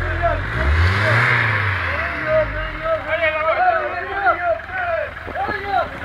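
A car engine idling, then revving up and falling back once about a second in. Voices call out over it in the second half.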